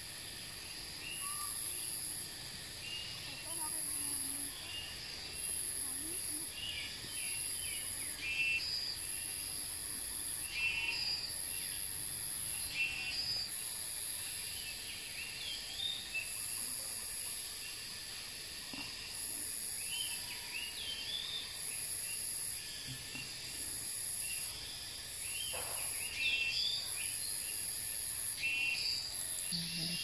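Insects buzzing in a high, pulsing chorus that swells for about a second and breaks off, over and over, above a steadier insect hum, with short bird chirps scattered through it.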